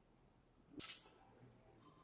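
Near silence: room tone, with one short, soft hissing noise a little under a second in.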